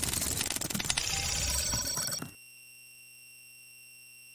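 Logo-animation sound effect: harsh glitchy digital static, full of rapid crackles, for a little over two seconds. It then cuts suddenly to a steady, held electronic tone.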